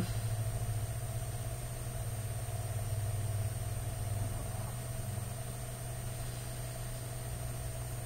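A steady low hum, strongest for the first few seconds and then weakening, with a faint steady higher tone under it.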